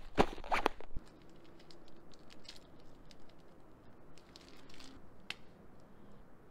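Rustling and knocking as a handheld camera is set down on rock, then a run of faint clicks and crinkles from a small plastic tube being handled, with one sharper click about five seconds in.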